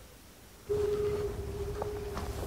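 A steady low droning tone with a rumble underneath cuts in suddenly about two-thirds of a second in, after a quiet start: the opening sound bed of a TV advert.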